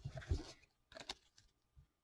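Faint handling sounds of trading cards on a tabletop: a few soft bumps and light clicks, then a couple of small ticks about a second in.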